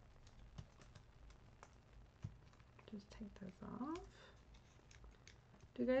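Faint, scattered light clicks and ticks of small paper pieces being handled and pressed down on a tabletop by hand, with a brief murmur of voice partway through.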